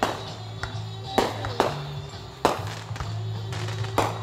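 Aerial firework shells bursting: five sharp, irregularly spaced bangs, each trailing off briefly, over music playing in the background.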